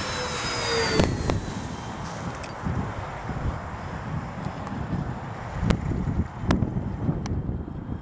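The motors and propellers of a radio-control F7F-3 Tigercat model whine past on a fast low pass, their pitch falling as it goes by in the first second. After that, wind rumbles on the microphone, with a few sharp clicks.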